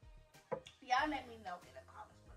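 A woman's voice, a short phrase about a second in, with background music underneath.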